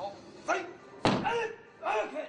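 Short, forceful shouts from a person, three of them, each starting suddenly; the loudest comes about a second in. They are the performer's exertion shouts as she pushes against a spear held to her throat in a qigong hard-throat feat.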